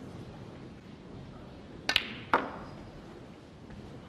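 Snooker shot potting the blue: a sharp double click about two seconds in, as the cue tip strikes the cue ball and the cue ball hits the blue, then another click a moment later. A hushed arena murmur lies underneath.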